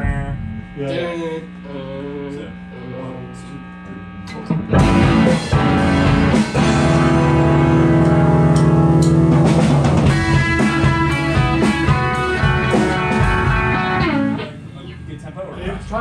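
Electric guitars through amplifiers play a loud, sustained rock passage together, a rehearsal run of one section. It starts about five seconds in and cuts off about fourteen seconds in. Before it, a steady amplifier hum.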